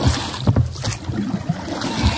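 Water sloshing around a rowing boat, with knocks about twice a second.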